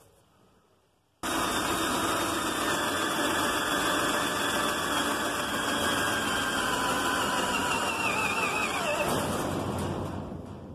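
Cordless drill boring a pilot hole for a self-tapping screw through sheet steel. It starts suddenly about a second in, runs steadily under load for about eight seconds, and winds down near the end.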